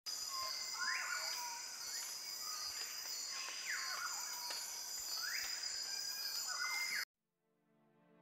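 Outdoor nature ambience: a steady high insect drone with a bird's call repeated about every one and a half seconds. It cuts off suddenly about seven seconds in.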